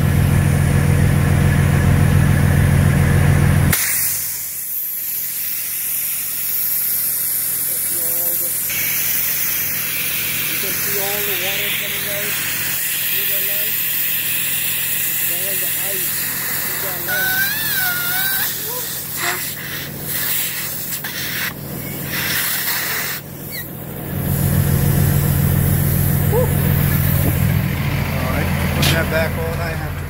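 Diesel truck engine idling, then about four seconds in a steady hiss of compressed air at the tractor-trailer gladhand air-line coupling, lasting roughly twenty seconds before the idling engine is heard again.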